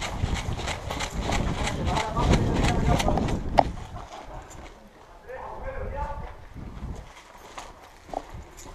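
Quick footsteps on a gritty concrete floor, about three a second, easing off about halfway through. Faint voices are heard in the distance.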